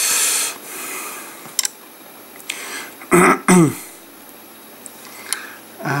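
A man clearing his throat twice in quick succession, about three seconds in, after a brief hiss at the start.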